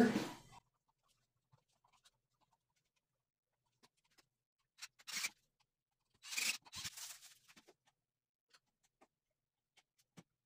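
Cordless drill/driver briefly running the mounting screws of a GFCI outlet into the electrical box: one short burst about five seconds in, then a longer one about a second later, with faint handling clicks around them.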